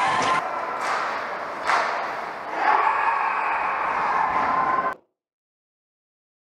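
Ice hockey arena sound during play: a steady crowd din with two sharp knocks of play on the ice about one and two seconds in, the crowd swelling louder near the three-second mark. The sound cuts off abruptly about five seconds in.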